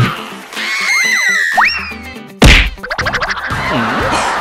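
Cartoon-style comedy sound effects over background music: a few sliding whistle-like glides, then a loud whack about two and a half seconds in, followed by a quick rattling flutter.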